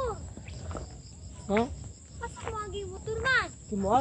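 Steady high-pitched drone of an insect chorus. A few short vocal calls from a person cut in over it, rising and falling in pitch, the loudest about one and a half and about three and a quarter seconds in.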